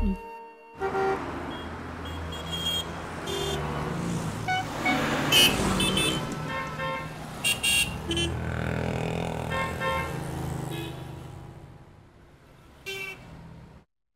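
City street traffic: engines and tyres running steadily, with many short car horn toots scattered throughout. The noise fades out near the end.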